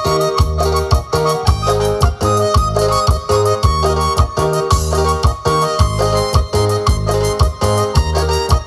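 Electronic keyboard playing dance music, with a melody over sustained bass notes and a steady, even percussive beat.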